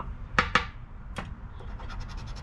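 A poker chip scraping the coating off a $20 Gold Rush Classic scratch-off lottery ticket. There is a sharp stroke about half a second in, another just past a second, and a run of quick light strokes near the end.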